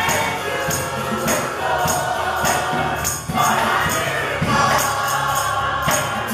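Gospel choir singing together over keyboard and percussion, the percussion keeping a steady beat.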